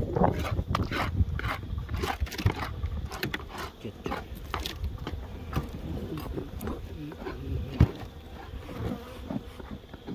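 Honey bees buzzing close around the microphone, their pitch wavering as they fly past, most noticeable in the second half. Scattered knocks and bumps run through it, the sharpest a little before the end.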